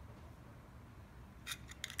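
Quiet room hum, then a few small metallic clicks near the end as fingers handle a just-pressed metal-backed button badge and its pin.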